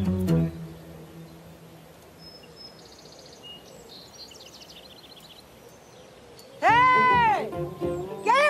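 Faint birds chirping in a quiet garden. About six and a half seconds in comes a loud, drawn-out call in a woman's voice that rises and falls in pitch.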